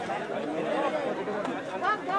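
Indistinct chatter of several voices talking at once, with no single clear speaker.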